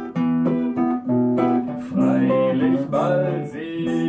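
Two guitars playing an instrumental passage of a song, with plucked and strummed chords and some sliding notes.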